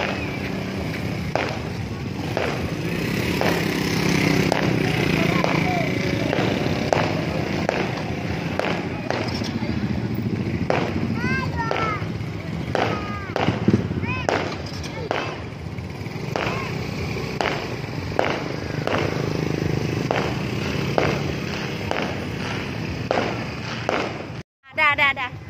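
Outdoor night-market din: motorcycles riding past, people's voices and a low steady hum. Through it runs a regular thump, about one every three-quarters of a second.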